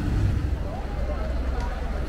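Steady low rumble of motorboat engines on the canal, with faint voices of people nearby.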